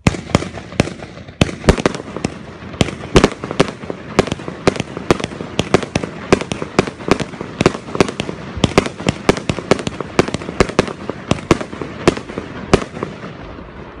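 A fireworks cake firing a rapid volley of shots and bursts, about three bangs a second over a steady hiss, starting abruptly and stopping about a second before the end.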